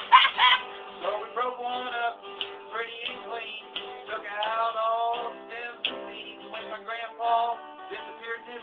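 A man singing a folk song, with guitar accompaniment.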